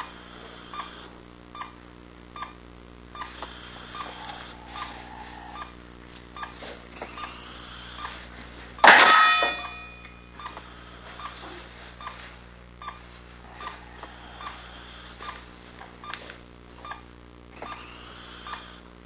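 Operating-room heart monitor beeping steadily, a short beep a little more than once a second, over a steady low hum. About nine seconds in, a sudden loud hit with a ringing tail is the loudest sound.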